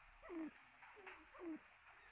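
Two soft, short bird calls that fall in pitch, about a second apart, like low coos.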